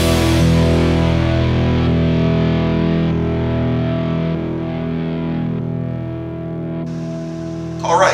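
Background rock music ending on one distorted electric guitar chord that is left ringing and slowly fades out over several seconds.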